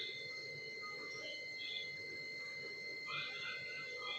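Whole cumin seeds, bay leaves and cinnamon sizzling faintly in hot oil in a kadai, with scattered small crackles.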